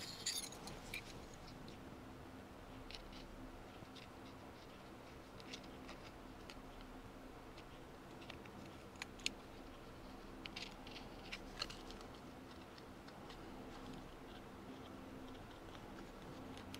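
Small scalpel blade cutting and picking out a hole in a thin adhesive decal on a tachometer face: faint scattered clicks and scratches, with a few sharper ticks in the middle, over a faint steady hum.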